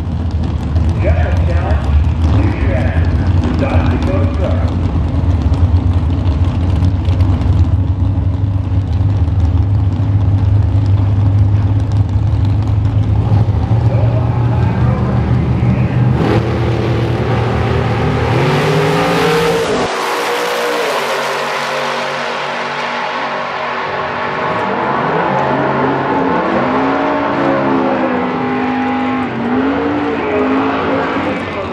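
Drag car's engine idling at the starting line with a steady low rumble, its pitch climbing from about 14 seconds in as it revs up. Around 20 seconds in the car launches away down the track, and its engine note rises and falls through the gears as it draws off.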